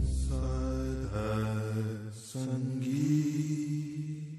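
Closing of a sung Sikh devotional hymn (shabad kirtan): long held chanted notes over a low steady drone, with a short dip past the middle before a last held note fades.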